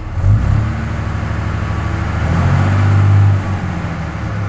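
Diesel truck engine revved from idle up to around 1,900 rpm, getting louder for about a second, then easing back down near the end.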